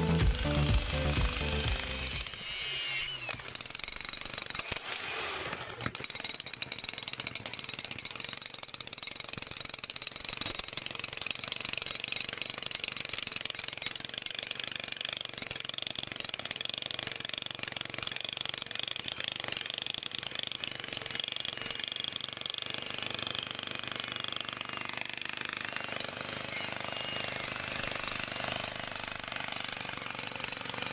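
Electric demolition breaker hammering into thick, steel-mesh-reinforced concrete with steady rapid blows. It takes over about two seconds in as music fades out.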